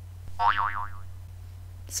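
A cartoon boing sound effect, its pitch wobbling up and down quickly, lasting about half a second near the start.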